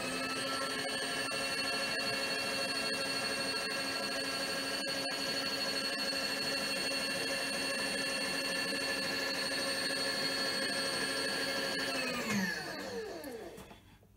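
Milling machine table power feed motor running at a steady whine as it drives the table along, then winding down in pitch and stopping about twelve seconds in.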